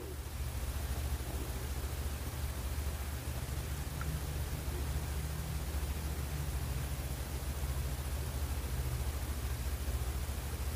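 Steady low hum over an even hiss: background room noise with no distinct events. The slow pour of the thick resin makes no sound that stands out.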